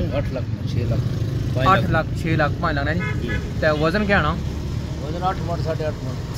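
Men's voices talking in short phrases over a steady low rumble.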